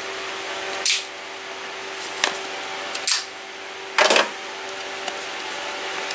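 A small cardboard product box handled in the hands: four short scrapes and rustles, the longest about four seconds in, over a steady background hum.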